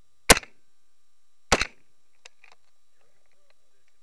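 Two carbine shots about a second and a quarter apart, each a sharp, very loud crack, fired through a barricade port.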